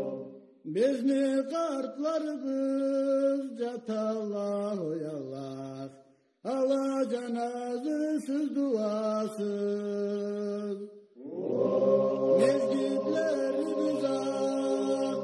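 Unaccompanied singing in long, drawn-out phrases with ornamented, gliding notes. Each phrase is followed by a brief breath-pause, about half a second in, around six seconds in and around eleven seconds in.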